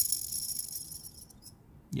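Buzzbait's metal blade spun by hand, squeaking and jingling against its rivet and wire arm, fading away over the first second and a half. This squeak is the noise that draws bass to the lure.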